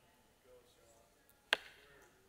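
A quiet pause with one short, sharp knock about one and a half seconds in.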